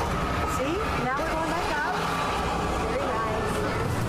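Wind rumbling on a phone microphone and fairground background noise as a moving Ferris wheel car descends, with a few short wavering vocal moans and squeals about a second in.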